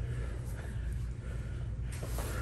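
Steady low hum of the room with faint background noise, and no distinct sound events.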